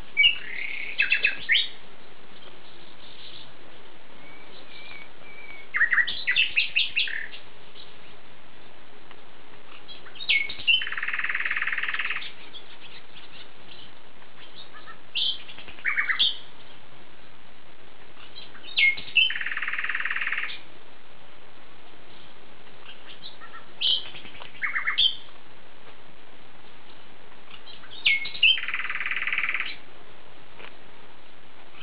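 Bird song: groups of short, sharp chirping notes, and roughly every nine seconds a buzzy trill lasting about a second and a half, over a steady faint hiss.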